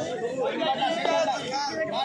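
Voices talking and chattering, more than one at once, with no other distinct sound.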